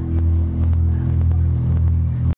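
Amplified electric bass and guitar sustaining a loud, steady low drone as a live instrumental rock trio's final chord rings out, with a few faint light ticks over it.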